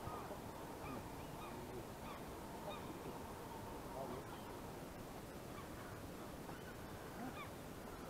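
Faint, scattered calls of distant birds over quiet riverside ambience, many short chirps and a few lower calls spread through the whole stretch.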